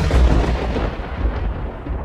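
A deep, thunder-like rumble with no clear pitch, slowly fading.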